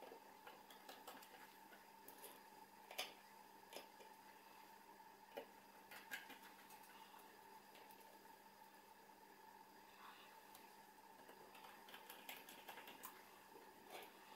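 Near silence, with a few faint, small clicks and taps of small screws and a screwdriver being handled on a wooden workbench, bunched together near the end.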